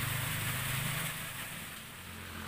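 A steady low engine-like hum with a background hiss, fading somewhat after about a second.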